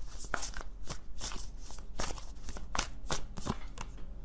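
A deck of oracle cards being shuffled by hand, a quick irregular run of card snaps at about four a second.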